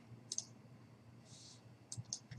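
Faint computer mouse clicks: a quick pair about a third of a second in and another single click near the end, over a low steady hum.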